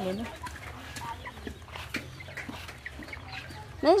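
Domestic chickens clucking faintly, a few short scattered calls. A voice trails off at the start, and a louder calling voice breaks in near the end.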